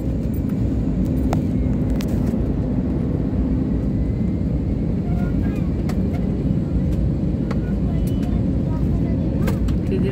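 Airliner cabin noise during the descent to landing: a steady low rumble of engines and airflow heard through the fuselage, with a low hum that stops about four seconds in.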